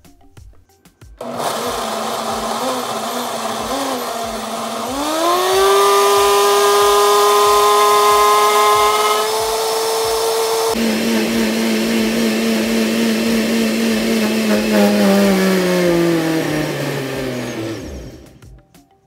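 Oster countertop blender running, puréeing chopped beet, apple, ginger and lemon with water into juice. The motor starts about a second in, climbs to a higher, steady whine around five seconds in, then drops in pitch as it winds down near the end.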